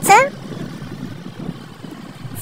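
Motorcycle riding steadily along the road: a low, even engine and road rumble mixed with wind noise.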